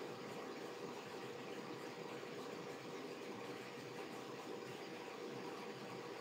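Faint steady hiss and hum of background noise, with a thin steady tone, unchanging throughout.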